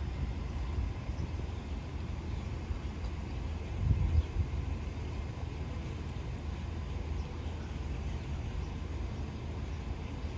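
Steady low outdoor rumble of background traffic and air, with a brief swell about four seconds in.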